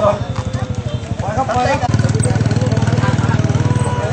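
A small engine running with a low, rapid pulse, getting louder about two seconds in, under people's voices.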